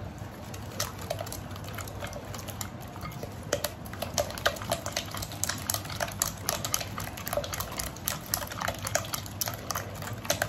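Silicone whisk beating eggs and sugar in a glass bowl: quick wet stirring with many light, irregular clicks of the whisk against the glass, several a second. The mixture is being beaten until the sugar dissolves into the eggs.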